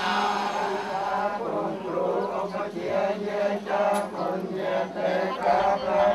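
Buddhist chanting by a group of voices reciting together in a steady, rhythmic monotone, held on one pitch with short regular breaks.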